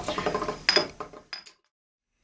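Small metal parts and tools handled on a metal plate: an irregular run of clicks and clinks that cuts off to silence about a second and a half in.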